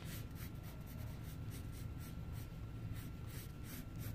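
Wooden pencil drawing on brown cardboard: faint, irregular scratchy strokes of the lead as it traces a curved outline.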